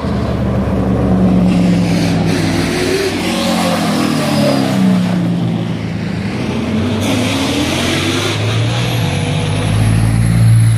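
Racing touring car engine accelerating up and past, its pitch rising and falling through gear changes as it goes by. Near the end a racing truck's deeper diesel engine comes in, growing louder as it approaches.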